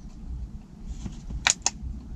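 Two quick sharp plastic clicks in close succession about one and a half seconds in: the plastic gimbal clamp snapping into place under a DJI Mavic Pro drone.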